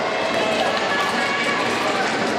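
Spectators' voices shouting and calling out to the skaters over a steady crowd hubbub.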